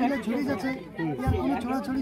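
Speech only: people talking, with overlapping voices.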